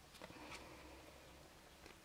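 Near silence, with a few faint soft clicks of tarot cards being drawn from a deck and handled, the clearest about half a second in and another near the end.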